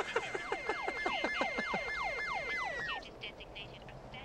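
Police car siren in a fast yelp: quick falling sweeps about three times a second over a steady high tone, which dips slightly just before both cut off about three seconds in.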